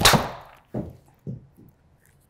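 Titleist TSi3 driver striking a golf ball: a sharp, loud crack at impact with a short ring-out. Two softer thuds follow, a little under a second and about a second and a quarter later.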